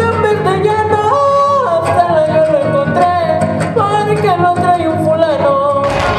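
Huapango music: a solo voice singing a melody with sudden leaps up into falsetto over strummed guitars. A few sharp taps from the dancers' zapateado footwork cut through.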